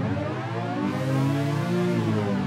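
An electronic music track run through the Ghammy pitch shifter, its whole pitch gliding smoothly upward toward an octave as the Momentary Pitch button is held to bend it.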